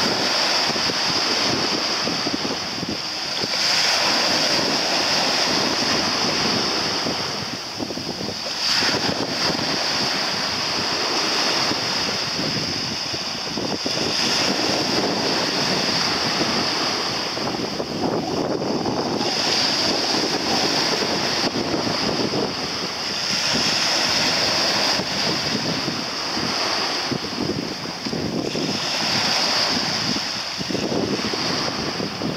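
Wind buffeting the microphone over the wash of small sea waves, with a high hiss that swells and fades several times.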